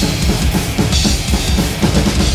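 Death metal drum kit played live at full tilt: rapid bass-drum strokes under snare hits and cymbal wash, with the rest of the band underneath in a drum-heavy mix.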